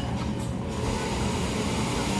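Steady low rumbling background hum with no distinct events.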